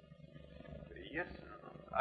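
A pause in the dialogue: one short, faint spoken word a little over a second in, over the low steady hum and hiss of an old film soundtrack.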